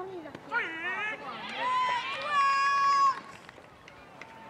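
Several high voices shouting and cheering across a baseball field, overlapping in long held calls that build from about half a second in and cut off just after three seconds.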